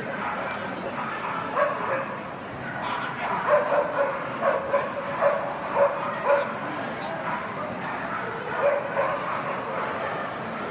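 A dog barking in a string of short, sharp barks, thickest through the middle and with one more near the end, over the murmur of a crowd.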